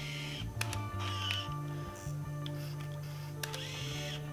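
Background music, with the small mechanical clicks of an Olympus Stylus Epic Zoom 170 Deluxe 35 mm compact camera: a click about half a second in, a brief motor whir, and another click near the end as the shutter fires and the film winds on a frame.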